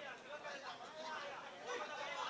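Indistinct voices talking over one another, like chatter among spectators.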